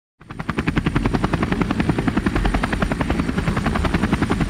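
Helicopter rotor chopping with a rapid even beat of about eight pulses a second over a low rumble, starting abruptly just after the beginning.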